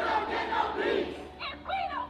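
A crowd of protesters shouting, several voices rising and overlapping.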